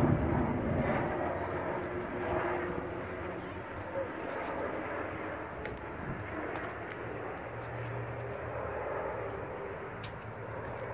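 Jet noise of a Northrop B-2 Spirit stealth bomber's four turbofan engines as it flies past, fading steadily as it moves away.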